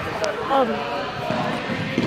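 A soccer ball knocking once on a hardwood gymnasium floor, about a quarter second in, amid children's voices that echo in the gym, with a spoken 'um'.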